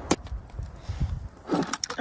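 Handling noise of a metal food tin and other items being picked up: a sharp click near the start, a low rumble of movement, then a few more clicks near the end.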